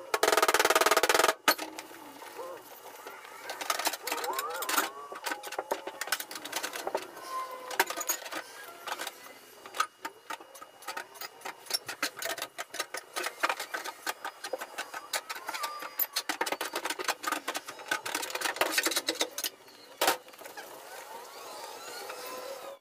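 Sheet steel of a truck bedside being worked with a long PDR bar: irregular metallic clicks, knocks and taps as the crease is pushed out and the high crown tapped down, with a loud dense stretch in the first second and a half.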